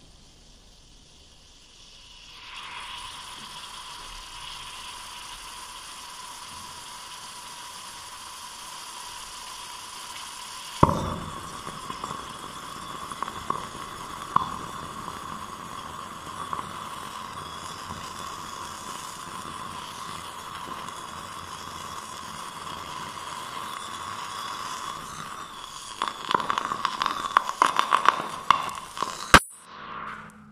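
Sodium metal fizzing and hissing as it reacts with water, with one sharp pop about eleven seconds in and a quick run of crackles and pops near the end. The hydrogen it gives off has caught fire as a small flame.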